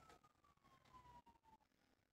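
Near silence: room tone, with only a very faint falling whine.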